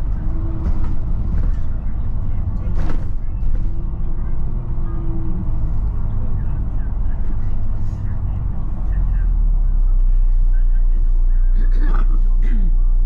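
Volvo B9TL double-decker bus heard from inside as it drives: a low diesel engine drone with road noise and body rattles, and a sharp knock about three seconds in. For the last few seconds the low drone grows louder and steadier as the bus slows into a roundabout.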